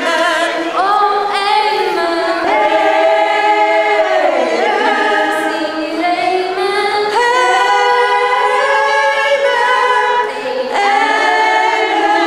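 A mixed amateur choir, mostly women, singing a Christmas song a cappella, with lead voices on microphones. They hold long notes, with short breaks between phrases about four and ten seconds in.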